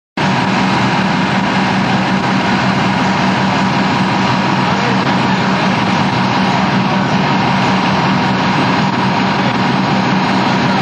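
Fire engine's diesel engine running steadily and loudly, an unbroken rumble with a thin steady whine over it, starting abruptly at the very beginning.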